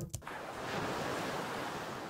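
Ocean waves and wind sound effect playing back: a steady rushing wash of surf that swells slightly about a second in. It is heard at its original pitch, without the pitch-down applied.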